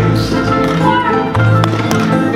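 Background music with sustained bass notes.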